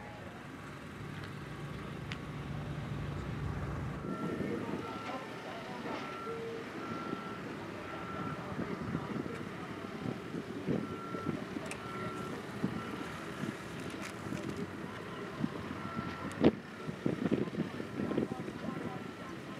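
Backup alarm on heavy construction equipment, such as an aerial lift, beeping about once a second, starting a few seconds in. A low hum fills the first few seconds, and a single sharp knock near the end is the loudest sound.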